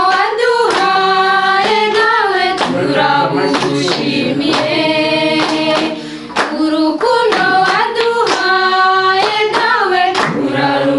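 Group of voices singing together in long held notes, with hands clapping along.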